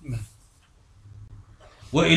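A pause in a man's spoken lecture: a brief low voice sound just after the start, then quiet room noise with a low hum, then his speech resumes at the very end.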